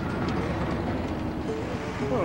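A motor vehicle's engine running with a low, rough rumble, music faintly beneath it.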